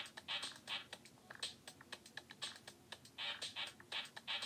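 Faint, irregular run of quick clicks and taps, like keys being typed on a keyboard.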